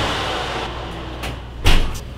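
Kitchen oven door being shut: a light knock, then a loud thump as the door closes, about one and a half seconds in.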